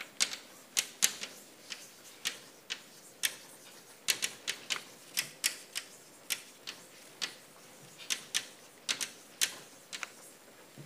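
Chalk writing on a blackboard: a run of sharp, irregular clicks and taps, two or three a second, as each stroke of the letters hits the board.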